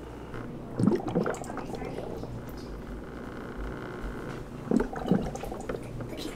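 Aquarium air bubbler bubbling in a small fish tank, a steady watery bubbling with a few short louder sounds about a second in and near the end.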